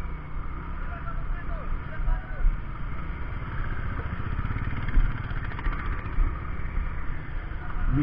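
Small single-cylinder four-stroke motorcycle engine of a Hero Splendor 100cc running steadily at low speed on a rough gravel road, heard from the bike itself.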